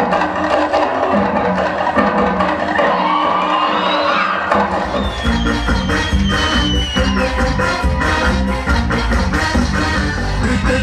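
Live stage music. Percussion-led playing is joined by a few rising high glides; then, about five seconds in, a band with drums, double bass and brass comes in with a strong, steady low beat.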